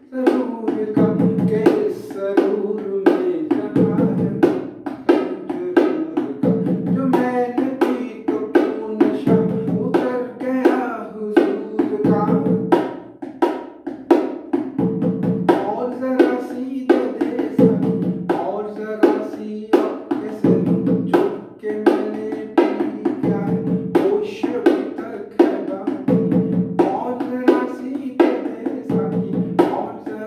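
Pair of bongos played by hand in an odd, uneven beat counted 1-2-3-4-4-4, the fourth count struck three times, repeating about every two and a half seconds. A man sings the song along with it.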